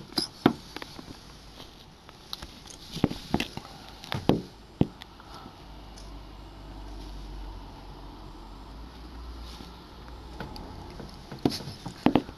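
A few sharp clicks and knocks in the first five seconds, then a low rumble lasting about four seconds in the middle.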